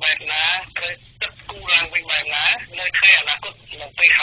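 Speech only: a voice talking without pause in Khmer, with a thin, telephone-like sound.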